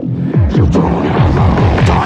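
Electronic music: a fast run of bass notes that each drop in pitch, about four a second, under a dense, hazy synth layer.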